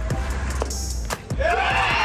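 Background music with a steady low beat. About one and a half seconds in, high-pitched cheering and screaming break out as the final out is made.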